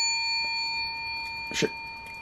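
A small bell rung once just before, its metallic ring of several clear tones slowly fading away; rung to mark a small win on a scratch ticket.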